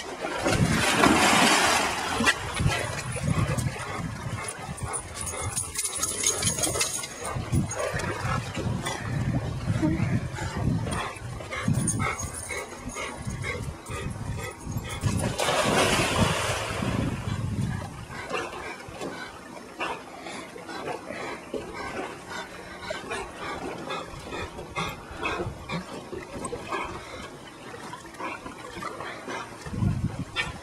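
A retriever wading and splashing through shallow water as it searches for a thrown rock, with dog sounds. There are two longer rushes of splashing, about a second in and again around the middle.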